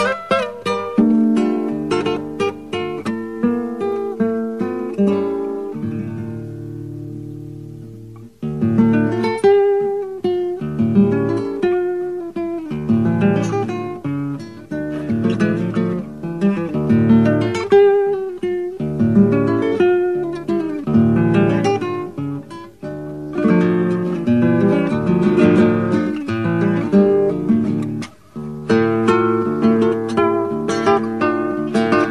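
Nylon-string acoustic guitar playing an Argentine zamba, with plucked melody notes over bass notes and strummed chords. About five seconds in, a chord is left ringing and fades away for a few seconds, then the playing starts again. There is a brief gap near the end.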